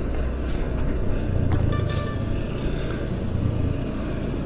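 Steady low rumble of vehicle engines and road traffic, with faint music mixed in.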